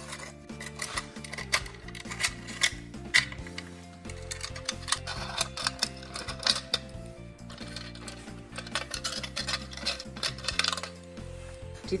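Light metallic clinks and rattles of a chrome motorcycle exhaust heat shield and its worm-drive hose clamps being handled, irregular throughout, over background music with held notes.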